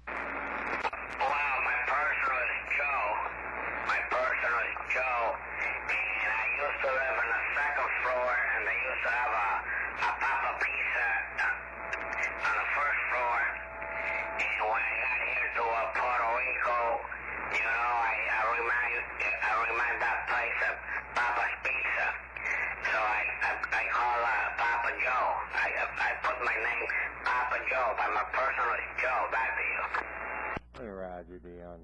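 A man's voice coming through a CB radio's speaker on lower sideband: narrow, thin-sounding speech over a steady low hum, as the other station answers after being handed the channel.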